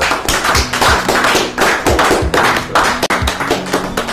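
People applauding, a steady patter of hand claps, over background music with a held low tone.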